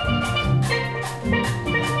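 A steel band playing: steel pans (tenors, double seconds, guitars and six bass) strike bright pitched notes over a deep bass line, with drum kit and hand percussion keeping a steady cha-cha-cha beat.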